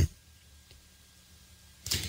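A pause in a man's speech: near silence, with the end of his last word at the start and a short intake of breath near the end.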